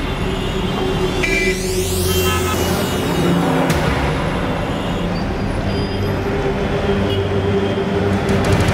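Dramatic background score music over night street traffic noise, with a sweeping whoosh about a second and a half in.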